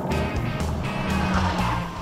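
Honda Civic Type R's turbocharged four-cylinder driving on a track, engine and tyre noise, over background music with a repeating bass beat.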